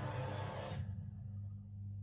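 Quiet room tone with a steady low hum; a faint hiss above it fades out about a second in.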